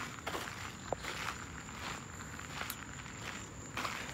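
Footsteps of a person walking at an easy pace, soft irregular steps about two a second, with light rustle from the handheld phone.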